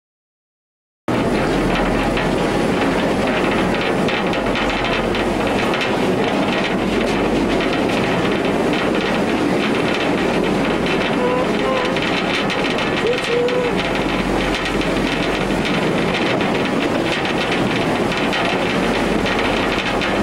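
Small mine tour train riding through a rock tunnel: the wagons give a loud, steady rumble and rattle on the rails, starting suddenly about a second in, with a few brief faint squeaks near the middle.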